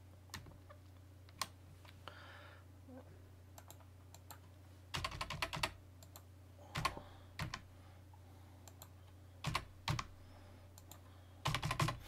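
Computer keyboard typing in scattered bursts of keystrokes with short pauses between them, over a faint steady low hum.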